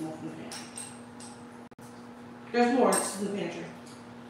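Light clinks of a metal spoon against dishes in the first second, over a steady hum; a voice speaks briefly about two and a half seconds in, the loudest sound.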